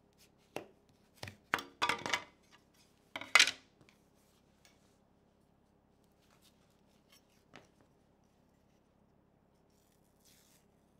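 A flat metal blade prying a cut-out wooden piece loose from the board beneath, with wood knocking and scraping as the pieces are lifted: a run of sharp clicks and short crackling scrapes in the first four seconds, the loudest near the middle of that run, then only a couple of faint ticks.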